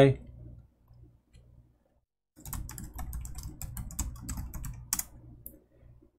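Typing on a laptop keyboard: a quick run of key clicks that starts about two seconds in and lasts about three seconds.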